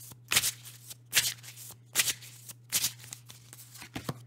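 A deck of tarot cards being shuffled by hand: about four short papery swishes, roughly a second apart.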